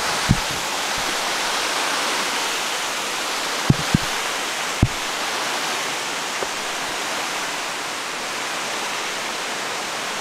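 Steady rush of a cascading stream, with a few short low thumps near the start and around four to five seconds in.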